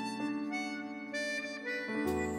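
Harmonica playing a slow melody into a microphone, its notes changing about every half second over steady held lower notes in the accompaniment.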